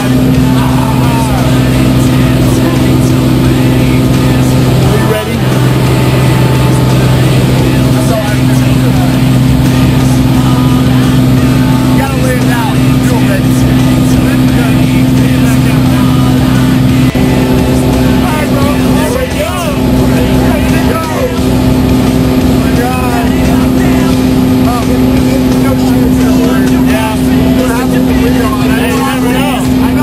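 Light aircraft's propeller engine droning loudly and steadily, heard from inside the cabin.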